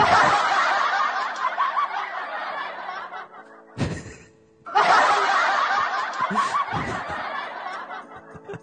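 A man laughing hard into a handheld microphone, in two long bouts with a short break about four seconds in.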